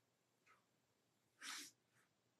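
Near silence, broken about one and a half seconds in by one short, faint breath through the nose.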